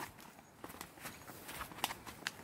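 Faint footsteps of people walking on a grassy dirt trail: a handful of soft, irregular steps, the clearest one near the end.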